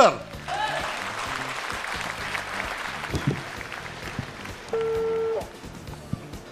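Audience applause that fades out after about four seconds, followed by a single short, steady telephone ringback tone as a call is placed.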